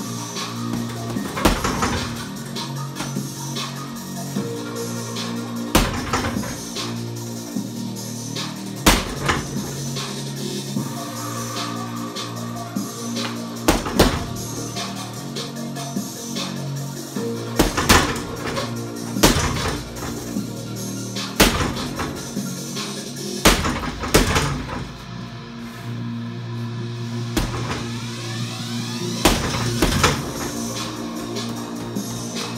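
Music plays steadily throughout. About a dozen sharp thuds of gloved punches landing on a hanging Everlast heavy bag cut through it at uneven intervals, every one to four seconds.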